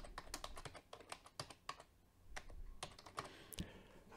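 Faint computer keyboard typing: a quick run of key clicks, a short pause about halfway, then a few more scattered keystrokes.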